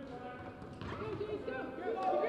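Quiet, echoing gymnasium room tone with faint distant voices partway through.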